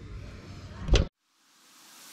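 Faint outdoor background noise, then one sharp thump about a second in that cuts off into a moment of dead silence at an edit, after which a hiss slowly fades up.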